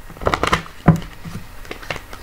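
Oracle cards being handled and drawn on a table: a few short, sharp card snaps and taps, the loudest about a second in.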